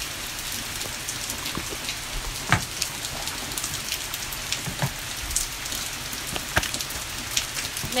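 Steady rain falling, an even hiss with many small drop taps and a few sharper taps through it.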